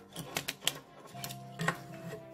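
A handful of wooden-handled clay sculpting tools with metal tips clicking and clattering against each other as they are handled, a few sharp clicks, over quiet background music with held notes that comes in about a second in.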